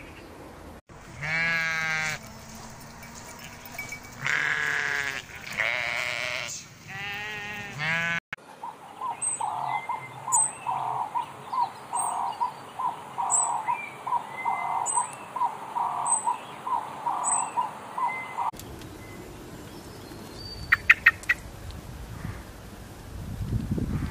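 Three long, wavering bleats in the first third. They are followed by a run of short, evenly spaced calls, about two a second, and a few quick clicks about a second before the end.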